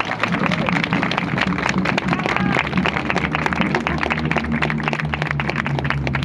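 Crowd applauding, many hands clapping irregularly, with voices talking among the clapping.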